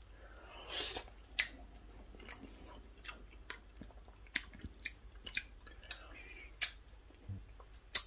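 A person chewing a mouthful of soft braised beef: faint, irregular wet mouth clicks.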